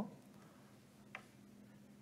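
Near silence: faint room tone with a low hum, and one short faint click about a second in.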